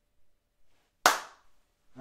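A single sharp smack about a second in, loud and brief, with a short decay.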